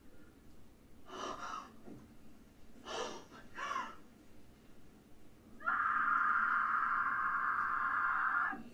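A woman's panicked gasps and sharp breaths, three of them, from a TV episode playing. About two-thirds of the way in, a loud, steady, high-pitched sound starts and holds to the end.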